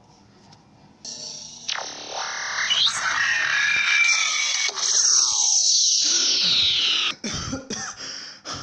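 Electronic sci-fi teleport sound effect: a loud synthetic whoosh with sweeping tones and a high hiss starts about a second in, ends in a falling sweep and cuts off suddenly about seven seconds in. Then a man gasps for breath in short, heavy bursts.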